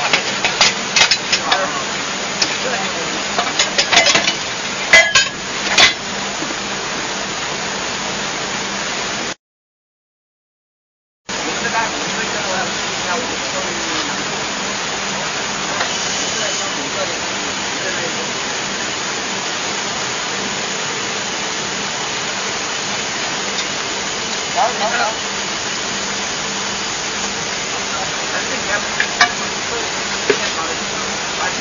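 Steady noise of underground coal-mine machinery with a low hum, broken by metal clinks and knocks in the first few seconds and again near the end. The sound cuts out completely for about two seconds roughly a third of the way in.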